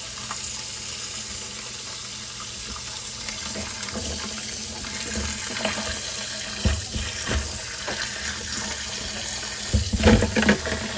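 Hot water running from a tap into a stainless steel sink, pouring over a chunk of ice. A few short knocks in the second half, as the ice shifts against the sink.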